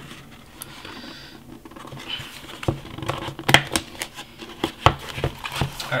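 A smartphone's paperboard retail box being handled as its tight lid is worked loose: fingers scratching and scraping on the box with a string of sharp taps and clicks, the loudest about three and a half and five seconds in.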